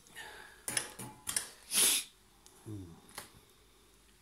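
Handling and movement noise: a few sharp clicks and knocks and a short rushing noise about two seconds in, then a brief low sound near three seconds, as the phone camera is moved.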